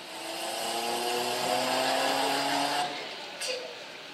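Electronic sound effect of several held tones over the hall's PA, entering one after another and sliding slightly down in pitch, swelling in over the first second and fading out about three seconds in.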